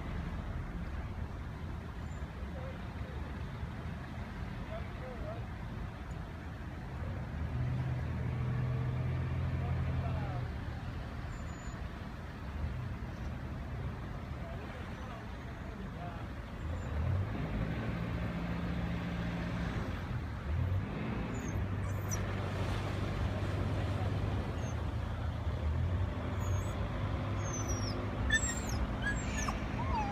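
A low engine hum that swells and fades in spells of a few seconds. A few short high squeaks come near the end.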